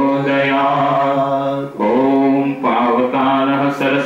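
Sanskrit mantras chanted in a slow, long-held melodic recitation, with short breaks between phrases about two seconds and two and a half seconds in.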